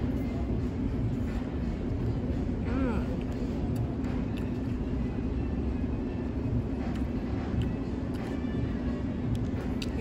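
Steady low hum and rumble of outdoor background noise, with a short voice sound about three seconds in.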